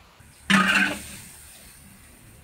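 One short, loud burst from a woman's voice about half a second in, then only a faint background hiss.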